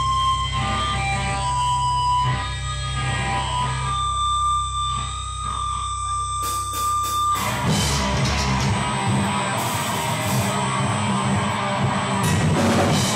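Distorted electric guitar through a Marshall stack: held, ringing notes over a steady amp hum, then about two-thirds of the way in a heavier, denser low riff starts.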